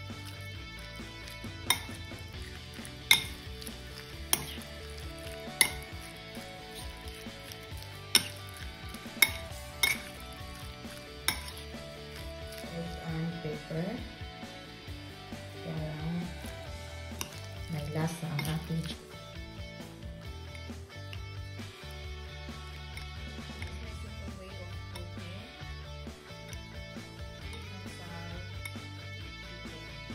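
Metal spoon clinking sharply against a ceramic plate about eight times in the first half, then softer scraping and stirring as seasoning is mixed into raw chicken pieces, over steady background music.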